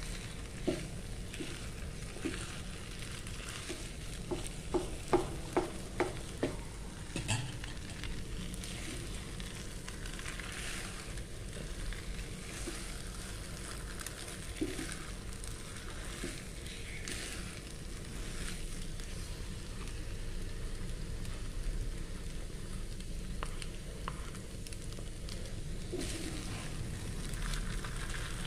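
Wooden spatula stirring and folding thick, sticky ube biko (glutinous rice cooked in coconut cream) in a pot over heat, with a steady soft sizzle from the cooking rice. A run of sharp knocks of the spatula against the pot comes about 4 to 7 seconds in.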